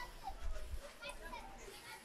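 Faint background voices, like children chattering and playing at a distance, with a brief low rumble about half a second in.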